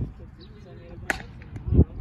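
A softball bat hits a soft-tossed ball with a single sharp crack about a second in. It is followed by a louder, dull low thump.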